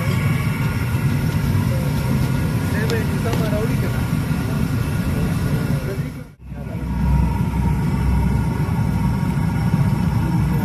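Steady outdoor street ambience: traffic and engine rumble with background voices. The sound drops out briefly about six seconds in and comes back with a heavier low rumble.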